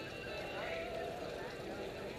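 Faint talking from people some way off, over steady outdoor background noise; no engine running.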